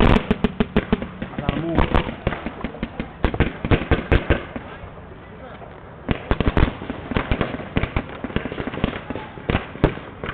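Paintball markers firing in irregular volleys of sharp pops. The shots thin to a lull about halfway through, then resume about six seconds in.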